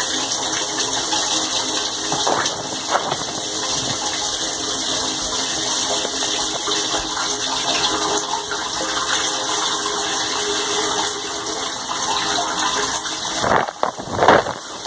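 Dishwasher running, heard from inside the tub: a steady rush of water churning in the sump, with a faint motor hum underneath from the circulation pump. Near the end, louder splashing surges come in as water starts spraying across the tub.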